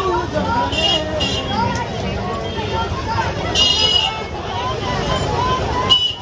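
Crowded street market: many people talking at once, with a vehicle horn honking two short toots about a second in and one longer toot about three and a half seconds in.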